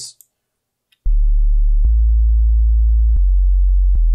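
Sine-wave sub bass from the Serum synthesizer's sub oscillator, set one octave down and played alone. After about a second of silence, three long, very low held notes follow one another, with a short click at each note change.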